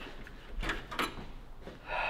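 A few light clicks and knocks as the plastic cap of a small device is handled and turned, over a low steady hum.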